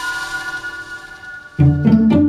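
Background music: held string-instrument tones fade away, then a loud drum hit with an instrument chord comes in near the end.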